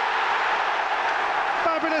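A large stadium crowd cheering a goal: a steady, loud wash of many voices with no single voice standing out.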